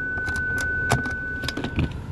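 Plastic clicks and rattles of the centre-console ashtray lid being handled, with a few sharp clicks about a second in and later. A steady high electronic tone sounds throughout and cuts off near the end.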